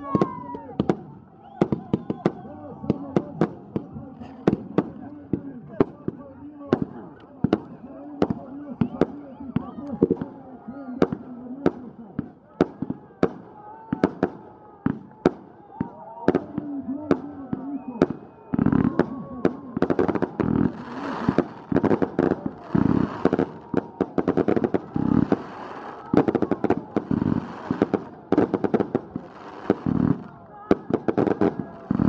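Fireworks going off overhead in a fast, irregular string of sharp bangs, two or three a second, over the voices of a crowd. From about two-thirds of the way through the sound grows denser and louder.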